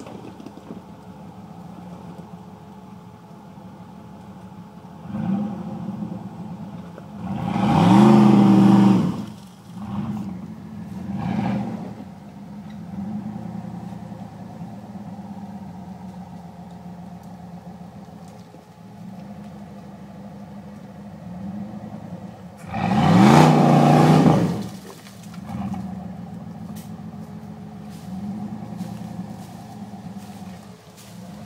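Modified Jeep Wrangler's engine working on a steep rocky climb: running at a steady lower pitch between repeated revs, with two long, loud surges about eight seconds in and again around twenty-three seconds, plus several shorter blips of throttle.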